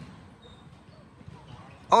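Quiet outdoor background noise with no distinct event; a voice cuts in right at the end.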